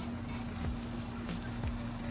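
An egg frying in butter on a hot pre-1959 Wagner Ware No. 9 cast iron griddle: a steady sizzle with light crackles, over a steady low hum.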